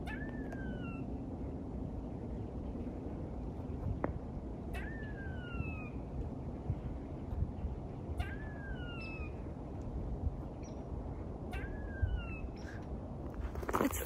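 Gray squirrel calling four times, several seconds apart: each call a short click followed by a falling, drawn-out note lasting under a second.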